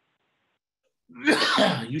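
Near silence, then about a second in a person coughs once, loud and sudden, running straight into speech.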